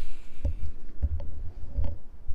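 Wind buffeting the microphone in low, gusty rumbles, with a few faint knocks from the handheld camera being moved.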